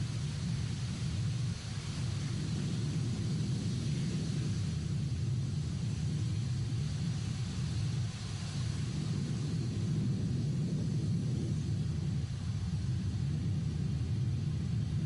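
Atlas V rocket's RD-180 first-stage engine firing during ascent: a steady, deep rumbling noise that stays even throughout.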